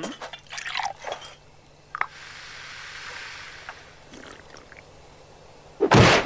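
Champagne being poured into a glass, then fizzing with a steady hiss and small clicks. Near the end comes a sudden loud splash of a body falling face-down into hot-tub water.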